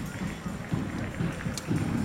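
Wind buffeting the microphone, an uneven low rumble, with faint voices in the background.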